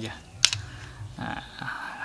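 A single sharp plastic click about half a second in, then the rustle of clear plastic wrapping being handled.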